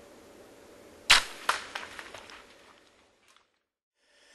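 A bow shot: a loud, sharp crack about a second in, a second crack about half a second later, then a few smaller crackles that fade out.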